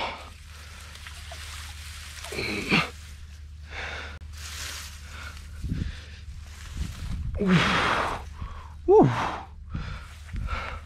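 A man breathing hard in gasps, with two short grunts about two and a half and nine seconds in, as he catches his breath after a strenuous scramble on a steep bank. There is rustling of grass as he moves.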